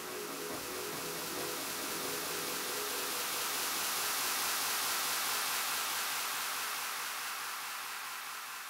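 Electronic noise music: a synthesized hiss-like noise wash that swells to its loudest around the middle and begins fading near the end. A few low held tones under it die away within the first three seconds.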